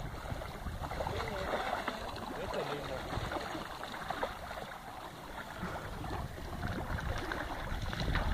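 Low, steady outdoor background rumble with faint distant voices; no distinct splashing stands out.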